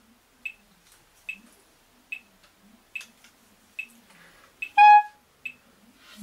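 Metronome ticking steadily, a little over once a second, set slow for technical practice. About five seconds in, a single short clarinet note sounds.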